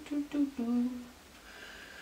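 A woman humming four short notes that step downward, the last one held for about half a second.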